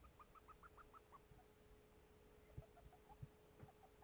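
Syrian hamster squeaking faintly as she sniffs: a quick run of about eight short, high squeaks in the first second, then a softer, lower run of squeaks later on. Owner calls it a very strange noise, an unusual sniff. She found no injury and the hamster breathes normally, so the cause is unexplained.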